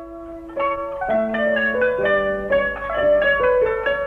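Turkish classical instrumental music: a kanun (plucked zither) playing a quick melodic line of single plucked notes, each ringing briefly, about four or five notes a second.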